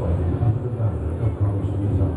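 Deep, pulsing rumble from a hall sound system, the low end of a dramatic stage-show soundtrack.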